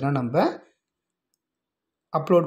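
Speech that stops abruptly within the first second, then dead silence with no sound at all for the rest.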